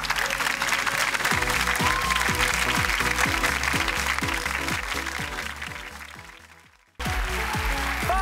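Studio audience applauding over the game show's theme music. Both fade out to a moment of silence about seven seconds in, then music and applause cut back in abruptly.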